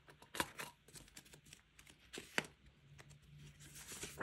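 Clear plastic binder envelopes and banknotes being handled: faint rustling and crinkling of the plastic with many small clicks, two sharper ones about half a second in and about halfway through.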